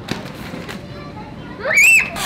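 A child's short, loud squeal that rises steeply in pitch near the end, over a background of children's chatter and play.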